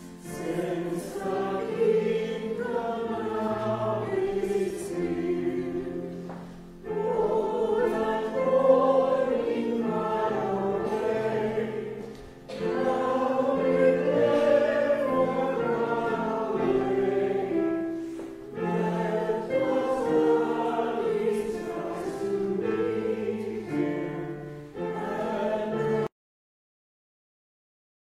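Congregation singing a hymn in phrases, with short breaks between lines. The singing cuts off suddenly at the end.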